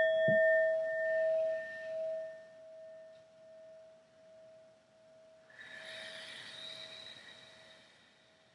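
A metal singing bowl rings on after being struck once with a wooden mallet. Its single clear tone wavers in loudness and slowly fades. A soft thump comes just after the start, and a faint hiss joins about five and a half seconds in.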